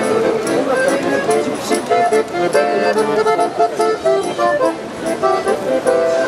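Music: a melody of short, evenly held notes that keeps going without a break.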